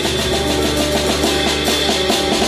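Live small-group jazz: an upright double bass playing long bowed notes over a drum kit with cymbals.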